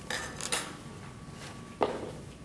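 Props being handled on a table: a short rustling clatter at the start, a sharp click about half a second in, and a knock near the end.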